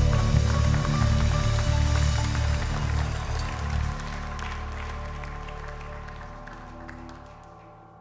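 Live worship band's final chord ringing out and fading away over several seconds, with scattered clapping from the congregation as it dies down.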